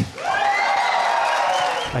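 Crowd cheering and clapping, with high voices shouting over it. It breaks out suddenly just after the start and cuts off abruptly near the end.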